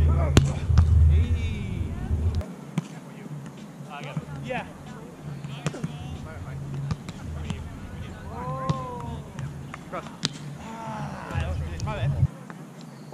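Beach volleyball in play: several sharp slaps of hands and forearms on the ball, a few seconds apart, with players' calls and shouts in between.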